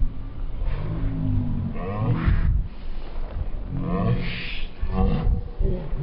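Drawn-out, low voice sounds in two stretches, about a second in and again about four seconds in, over wind noise on the microphone.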